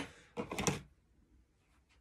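Brief handling clatter of hand tools: a trowel set down and a blister-packed brick jointer picked up, giving a few short, light knocks and rattles about half a second in.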